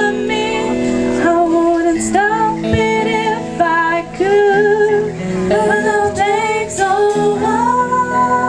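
A young woman singing lead in a live pop cover, backed by a band with acoustic guitar and drums.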